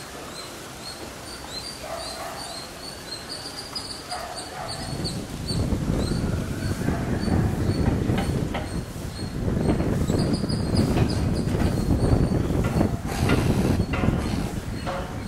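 Small birds chirping over and over in short high notes, with a loud, irregular low rumbling noise building in from about five seconds in.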